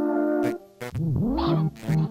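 Software modular synthesizer (VCV Rack) playing pitched tones: held notes break off about half a second in, then a new note swoops down and back up in pitch and settles into held tones again.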